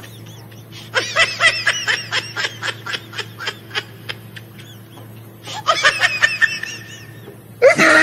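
A woman giggling in fits of quick, breathy laughs held back to keep quiet: one run from about a second in lasting some three seconds, a shorter one past the middle, and a louder burst of laughter breaking out near the end. A faint steady low hum sits underneath.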